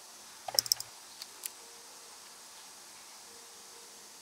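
A quick cluster of sharp metallic clicks about half a second in, then two fainter ticks, as a steel implant drill bit is lifted from and set against the slots of an Osstem implant surgical kit tray.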